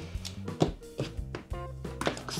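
Background music with steady held tones, over a few light clicks and knocks from a USB tester and charging cable being handled and unplugged.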